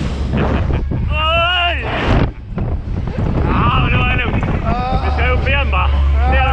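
Two men yelling and laughing on a reverse-bungee catapult ride, their voices wobbling in pitch as they are bounced, with wind rumbling on the microphone.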